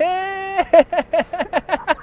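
A voice gives one long held call, rising at its start, then breaks into rapid laughing syllables, about seven a second.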